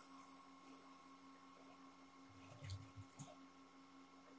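Near silence: room tone with a faint steady hum, and a few very faint soft ticks a little past halfway from fingers handling the small cable wires.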